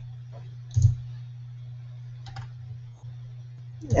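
A few sharp clicks of a computer mouse, the strongest about a second in, over a steady low electrical hum.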